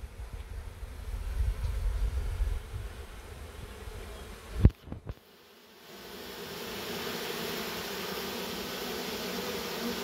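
Honeybees of a shaken-down swarm buzzing as a steady hum while they walk into the hive after their queen. A low rumble underlies the first half, broken about halfway by one sharp knock, after which the buzz comes in close and steady.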